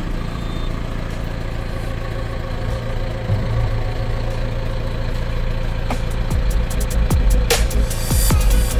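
John Deere 6430's 4.5-litre diesel engine idling steadily just after starting, heard from inside the cab. Electronic music plays over it, getting busier near the end.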